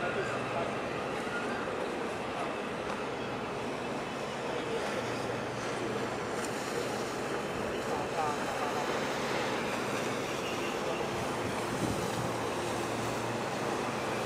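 Steady wash of wind and water with a faint low hum from the large container ship COSCO Spain passing close by.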